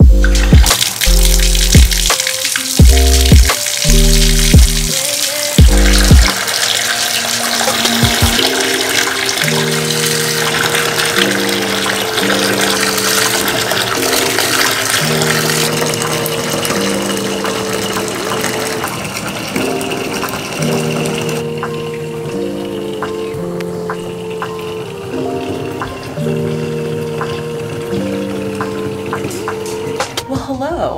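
Bathtub filling from the tap, a steady rush of running water under background music. The water starts about a second in and stops about two-thirds of the way through.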